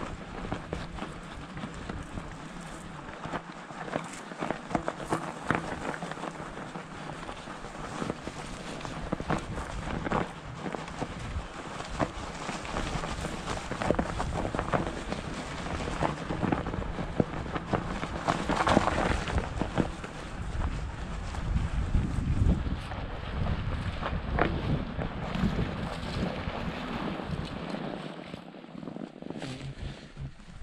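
M2S All Terrain R750 electric fat-tire bike riding over a thin layer of cold snow: tires crunching and bumping along the trail. Wind buffets the microphone, heaviest in the second half.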